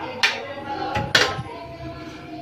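Two sharp clicks about a second apart from a small wall switch being pressed to power the water heater, over faint background sound.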